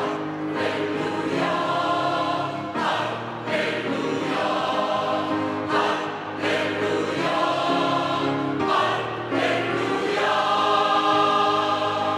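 Mixed choir of women's and men's voices singing 'Hallelujah, hallelujah' in short repeated phrases.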